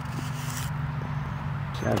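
A steady low hum with a few faint clicks and scrapes from hands handling model rocket parts.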